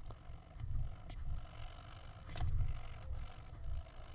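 Ballpoint pen scratching on printer paper in short shading strokes, with a dull low rumble underneath and a few sharper scratches about half a second, a second and two and a half seconds in.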